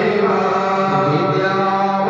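Male Hindu priests chanting Sanskrit Vedic mantras in a steady, continuous flow with long held notes.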